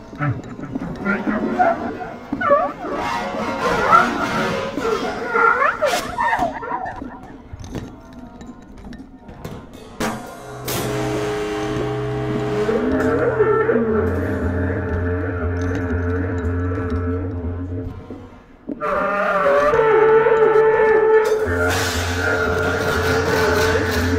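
Free improvised music on bass clarinet and drum kit. For the first few seconds the bass clarinet slides and squeals between pitches among scattered cymbal and drum strikes. After a sharp hit about ten seconds in, the music settles into long held tones over a low pulsing note, which drops away and comes back louder a few seconds before the end.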